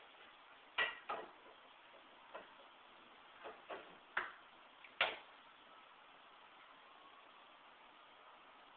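A popsicle-stick truss bridge under about 50 pounds of load gives a string of sharp snaps and clicks, about seven over the first five seconds, the loudest near five seconds in. The snapping is put down to the glue joints giving way.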